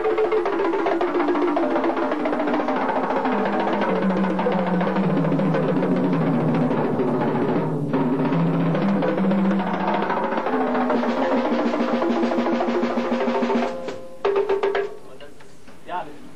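Drum kit tom-toms played in a fast single-stroke roll that moves down from the high toms to the floor tom and back up again. The roll stops short about fourteen seconds in, followed by a few separate strokes.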